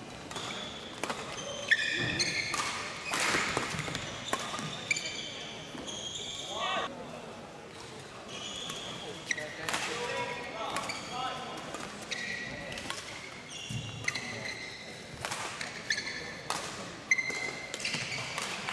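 Badminton rally in a large hall: rackets cracking against the shuttlecock and court shoes squeaking in short high chirps as the players lunge and push off, repeated throughout.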